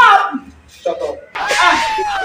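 A woman's shouting voice, then a sudden sharp smack-like hit about one and a half seconds in.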